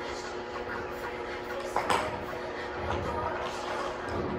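Steady low room hum with a single brief knock a little under two seconds in.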